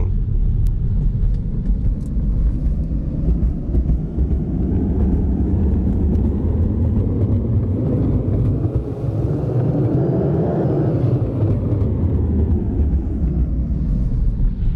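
Steady low rumble of tyre and road noise inside a Tesla's cabin, driving over a rough, snow-covered road; it swells and brightens about two-thirds of the way through.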